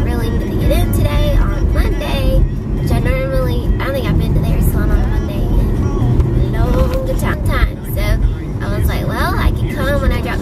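A woman talking inside a moving car's cabin, over steady road and engine noise.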